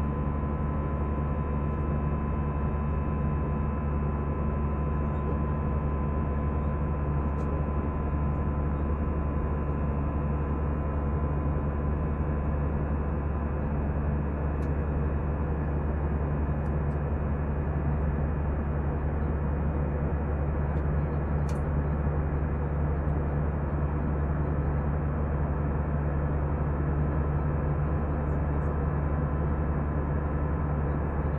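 Steady cabin drone of an Airbus A320 in cruise: engine and airflow noise heard from inside the cabin at a window seat over the wing, with a few steady hums in it.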